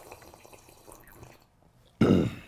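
A person sipping a hot chai-like coffee from a mug: a soft slurp of liquid that trails off after about a second and a half.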